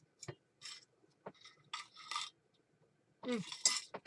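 A few faint, separate clicks and light scrapes of small objects being handled and set down, then a short "mm" near the end.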